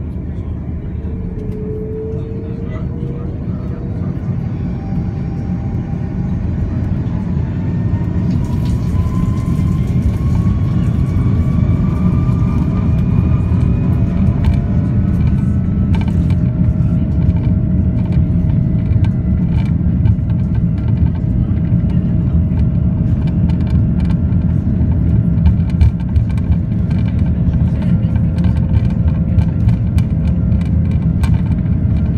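Jet airliner engines spooling up to takeoff thrust, heard from inside the cabin: rising whines over a deep rumble that grows louder as the aircraft accelerates down the runway. From about a third of the way in, frequent rattles and knocks join it as the wheels roll faster over the runway.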